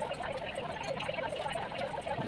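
A steady, dense chorus of many small animal calls overlapping continuously.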